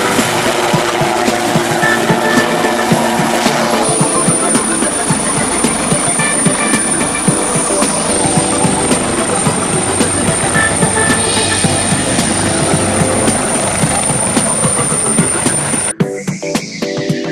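Helicopter close by: its rotor chops rapidly over turbine noise, and a high steady whine joins in about four seconds in.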